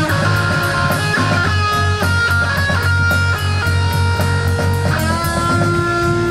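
Live rock band playing an instrumental passage: electric guitar holding long lead notes, one sliding up into a sustained note about five seconds in, over a low bass line and steadily ticking cymbals on the drum kit.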